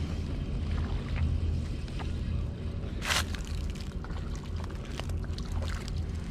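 Spinning reel being cranked to bring in a small hooked bass, over a steady low wind rumble on the microphone, with one brief rushing noise about three seconds in.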